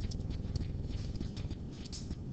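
Light, irregular clicking of buttons being pressed on a calculator as a calculation is keyed in.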